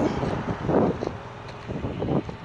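A Yamaha MT-07's parallel-twin engine at low revs as the motorcycle moves off slowly and draws away, with wind gusting on the microphone.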